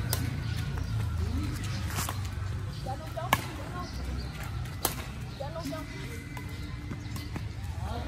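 Badminton rackets hitting a shuttlecock back and forth in a rally: a sharp hit about every one and a half seconds, four in all, the loudest two in the middle, over a low background rumble.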